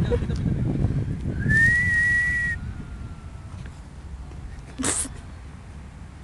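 A single whistle blast of about a second, rising briefly and then held steady: the signal for the penalty kick to be taken. A short rush of noise follows about five seconds in.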